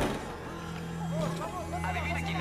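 Indistinct voices of a crowd chattering in a gymnasium over a steady low hum, getting busier about a second in.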